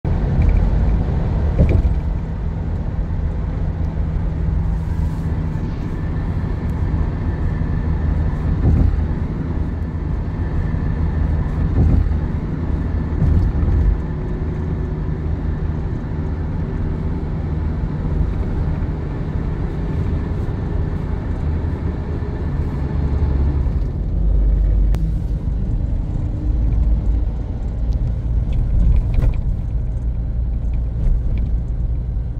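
Car driving along, heard from inside the cabin: a steady low engine and road rumble with tyre noise.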